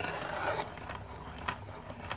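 Hand crank of a New Tech manual curtain grommet cutter being turned, its rotary blade cutting a round hole through fabric: a steady, even noise with a couple of faint clicks.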